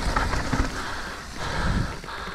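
Mountain bike riding along a dirt singletrack strewn with dry leaves: a steady rolling noise of tyres on dirt and leaves with light rattles and a few clicks from the bike, a little louder near the end.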